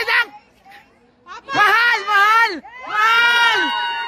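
Spectators' high-pitched cheering shouts at a basketball game: after a brief near-quiet lull, two long drawn-out shouts about a second and a half in, each rising and falling in pitch.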